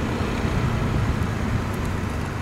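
Motorcycle riding at a steady speed, its engine running evenly under a steady rush of wind noise.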